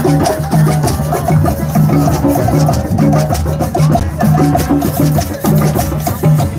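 Drum circle: many hand drums and other percussion playing a steady, driving rhythm, with sharp clicks on top of the low drum strokes.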